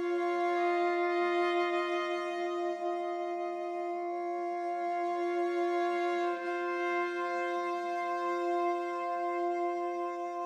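Sampled solo viola, soft bowed sustained notes from a con sordino-into-normale crossfade patch. It plays a chord with a low note held throughout while the upper notes shift about half a second in, around four seconds and around six seconds.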